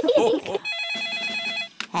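A cartoon mobile phone ringing: one trilling electronic ring lasting about a second, just after a burst of laughter.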